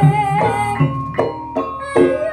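Live Javanese gamelan music for tayuban dancing: regular drum strokes and ringing struck metal keys roughly twice a second, under a held, wavering melody line.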